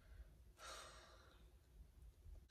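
Near silence with one soft breath out, about half a second in.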